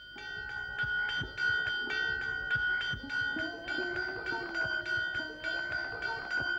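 Hanging metal school bell struck rapidly with a hammer, about four strikes a second, with a steady ringing tone carrying through the strikes.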